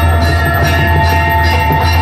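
Bells ringing rapidly and continuously during a Hindu aarti, over loud music with a steady low drone.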